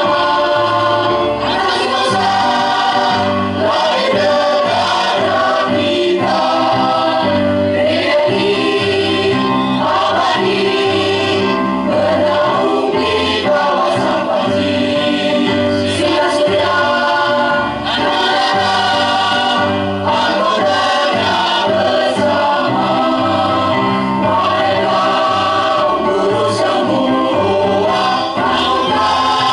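A mixed choir of men's and women's voices singing a song together, continuous and steady.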